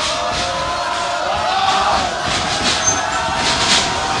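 Wrestling crowd in a hall chanting, voices drawn out on long held notes that slowly bend in pitch.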